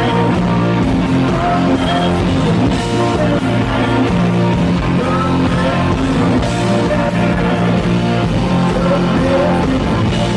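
A live rock band plays loud and steady, with electric guitars and drums, while a male singer sings into a handheld microphone.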